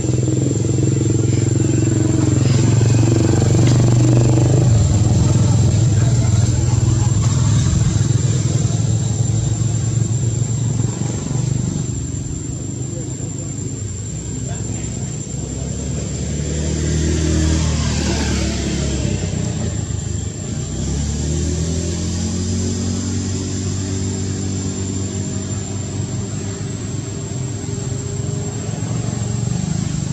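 Motor vehicle engines running, with one vehicle passing by about two-thirds of the way through, its pitch rising and falling as it goes. A steady thin high whine sits over it.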